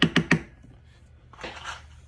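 A screwdriver rapping quickly against the inside of a plastic jar of powder paint as the paint is stirred and fluffed up, four or five sharp knocks right at the start. A short scraping rustle follows about one and a half seconds in.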